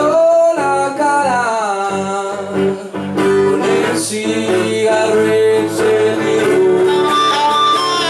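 Live acoustic guitar strumming under an amplified harmonica playing a melody with bending, sustained notes.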